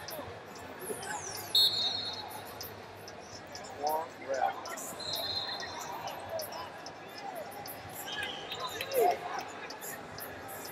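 Indoor wrestling-arena sound in a large echoing hall: wrestling shoes squeak on the mat a few times, mostly around the middle and again near the end. Two short high whistle blasts come over faint distant voices.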